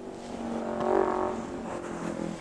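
A motor vehicle's engine passing by, swelling to its loudest about a second in and then fading.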